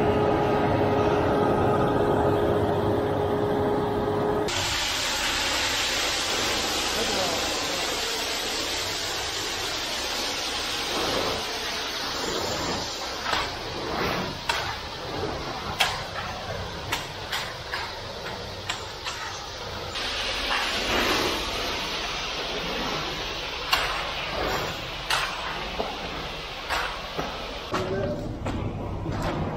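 A steady engine drone for the first few seconds, then a cut to a steady hiss with scattered knocks and scrapes from hand tools raking and floating wet concrete.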